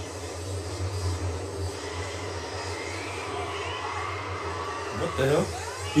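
A steady low hum with faint voices in the background, and a man's voice speaking briefly about a second before the end.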